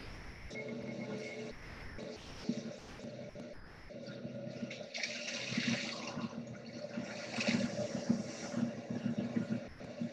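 Soft sustained tones of meditation background music, with slow deep breaths hissing softly into a close microphone, swelling about halfway through and again near the end.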